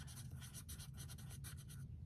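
Pencil writing on a small paper card: faint, quick scratching strokes of the graphite lead.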